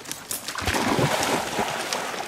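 A dog splashing into a pond and swimming, a rush of churned water that builds about half a second in and eases off toward the end.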